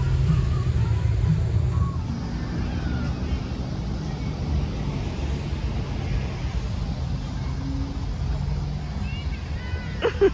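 Steady low outdoor rumble, with faint distant voices.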